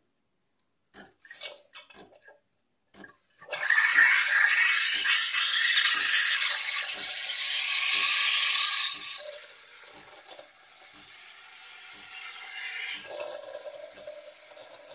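Espresso machine steam wand frothing milk in a stainless steel jug. A few sputters come first, then a loud steam hiss starts about three and a half seconds in and settles to a quieter hiss about two thirds of the way through. A faint regular tick, about twice a second, runs under it.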